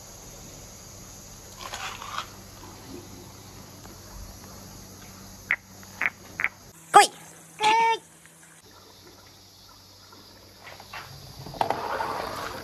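Brief animal calls: three short chirps, then two louder pitched yelps about seven and eight seconds in. Near the end a rising rattle starts as marbles begin rolling down the wooden course.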